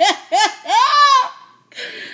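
A woman laughing hard: two short bursts, then a longer, higher laugh that rises and falls in pitch.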